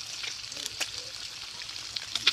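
Bacon frying, a steady high sizzle with scattered crackles and pops.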